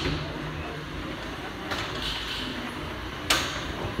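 Antweight combat robots striking each other: a fainter knock near the middle, then a sharp, loud hit about three seconds in.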